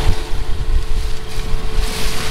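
Wind buffeting the camera microphone in a heavy rumble, over the steady hum of an idling combine engine; the hum stops just before the end.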